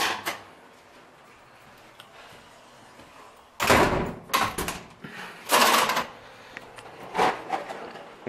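A stairwell door being opened and swinging shut: after a few quiet seconds, a run of loud clunks and knocks from its latch and frame.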